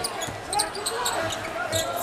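Basketball dribbled on a hardwood arena court, with crowd noise behind it.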